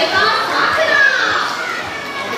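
Crowd of spectators, many of them children, crying out excitedly as a dolphin leaps, with one long rising-and-falling cry about a second in.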